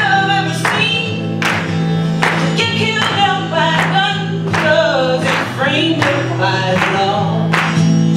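A woman singing a folk song live, accompanying herself on a steadily strummed steel-string acoustic guitar.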